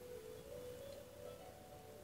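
Faint background music: a few soft held notes, stepping slightly higher in pitch partway through.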